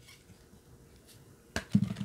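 Quiet handling of a stack of trading cards in gloved hands. A single sharp click comes about one and a half seconds in, and then a man's short "ooh" at the very end.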